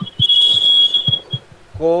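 A steady high-pitched whistle-like tone lasting about a second, with a few soft low knocks around it.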